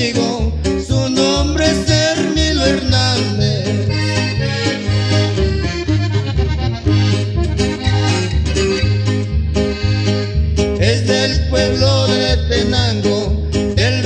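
Instrumental norteño music: a button accordion plays the melody over strummed guitar (bajo sexto) and a bass moving between low notes in a steady beat.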